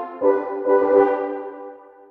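Sampled French horn section from Vienna Ensemble Pro's included orchestra playing sustained chords. A new chord enters just after the start and fades away toward the end.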